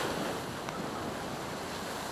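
Storm waves breaking against a sea wall, with spray and seawater washing across the promenade paving, heard as a steady rushing noise mixed with wind.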